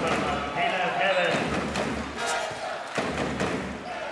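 Arena sound at a stoppage in a basketball game: voices from the court and the crowd, with a few sharp ball bounces on the hardwood floor about three seconds in.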